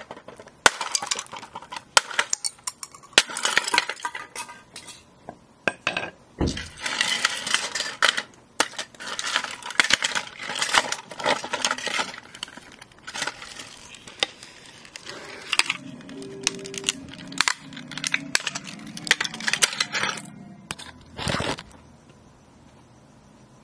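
A red plastic toy alarm clock radio being smashed and broken apart. There is a long run of sharp cracks, snaps and knocks, with plastic pieces clinking and clattering.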